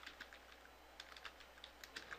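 Faint computer keyboard typing: a quick, irregular run of key clicks.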